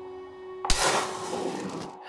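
Trailer soundtrack: a held drone of steady notes, cut off about two-thirds of a second in by a sudden loud crash-like hit of noise that fades away over the next second.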